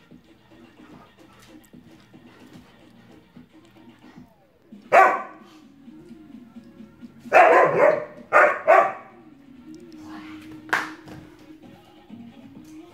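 Husky barking up at its toy caught out of reach on a door frame: four separate barks, one about five seconds in, two longer ones close together after seven seconds, and a short one near the end.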